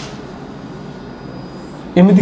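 Steady low background rumble of the room while a marker is drawn along a whiteboard, with a faint thin high squeak from the marker tip in the middle.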